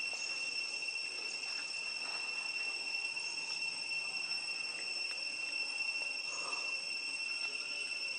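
Insects calling in one steady, unbroken high-pitched drone, with faint small sounds now and then over it.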